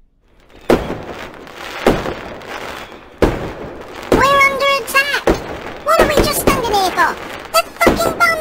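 Fireworks going off: three loud bangs about a second apart in the first few seconds, then more bangs among voices calling out in long, drawn-out tones that rise and fall.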